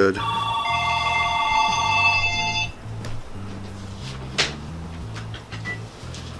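A ringing tone of several steady high pitches sounding together, held about two and a half seconds and then cut off abruptly, over background music with low sustained notes. A single sharp click comes about four and a half seconds in.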